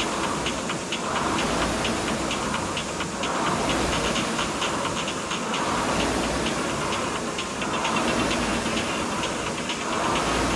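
Concept2 air rowing machine's flywheel whooshing, surging with each drive stroke about every two seconds at a steady pace, with fast light clicking over it.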